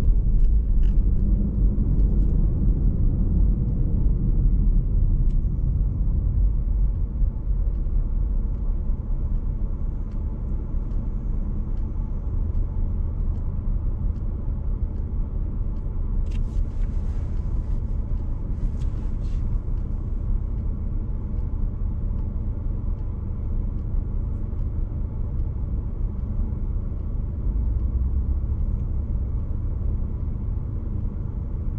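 Low, steady rumble of a car's engine and road noise heard from inside the cabin, louder for the first several seconds while the car rolls in traffic, then quieter as it slows and waits at a red light.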